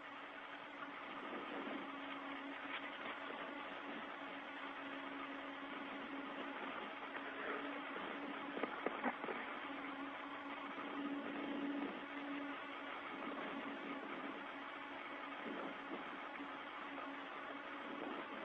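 Steady hiss of an open space-to-ground radio channel, with a low steady hum that weakens about two-thirds of the way through and a few faint clicks.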